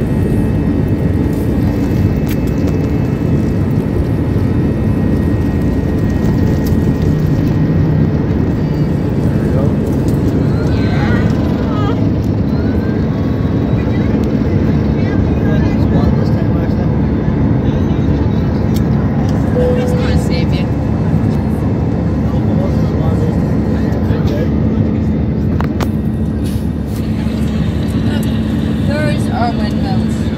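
Jet airliner cabin noise during the takeoff roll and climb: the engines at high power give a loud, steady rushing noise with a low, constant hum.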